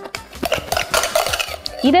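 A spatula scraping thick cream out of a glass bowl onto a glass baking dish, with light scrapes and clinks against the glass.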